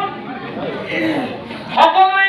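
A man's voice speaking into a microphone in a large hall, with other voices chattering behind it. A single sharp hit comes near the end.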